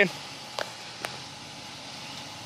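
Quiet, steady background noise with two faint clicks, about half a second and a second in.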